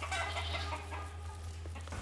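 Faint short animal calls, most of them in the first half-second, over a steady low rumble.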